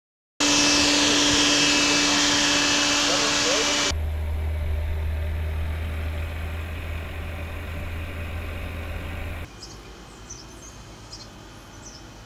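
Fiat Grand Siena car on the move: loud steady road and engine noise with fixed tones that cuts suddenly about four seconds in to a low rumble. The rumble drops away with about two and a half seconds left, leaving faint high bird chirps.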